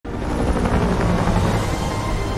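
A loud, dense low rumble from a film's sound mix that starts abruptly, with faint steady tones of a score beneath it.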